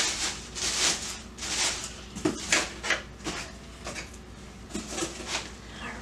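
Crinkling and rustling of white packing material being handled inside a cardboard produce box, in a string of separate bursts, with a couple of light knocks about two and a half seconds in.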